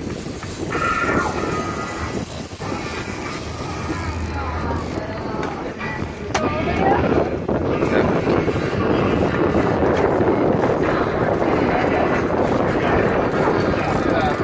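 Boat noise: a steady rush of water and wind with a motor underneath, growing louder about halfway through, with faint voices in the first half.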